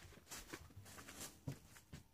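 Faint handling noise: a run of soft taps and rustles, the loudest about a second and a half in, dying away at the end.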